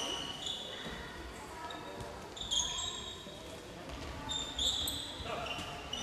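Handball match sounds in a sports hall: the ball bouncing on the court, short high-pitched sneaker squeaks several times, and players' shouts, all echoing in the hall.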